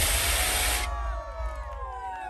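Stage CO2 jet cannons firing a loud, even hiss that cuts off about a second in, followed by faint crowd noise.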